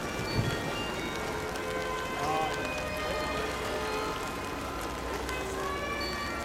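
Carillon bells on a bell boat ringing a tune, many overlapping ringing notes, with rain pattering throughout. A single short thump about half a second in.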